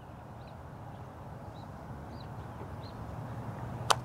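A golf putter striking a golf ball once, a single sharp click near the end, over a quiet outdoor background.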